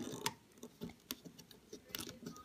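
A few faint clicks and ticks of fingers and rubber bands handling a plastic loom as a band is placed onto its pins.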